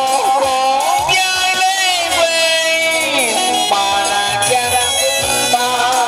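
Classical Vietnamese tuồng (hát bội) theatre music: a sung or wind-instrument melody that glides and wavers between notes, with a long held note about a second in, over instrumental accompaniment.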